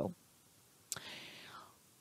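A short pause in a woman's talk, close to a headset microphone: a small mouth click about a second in, then a faint, brief breath.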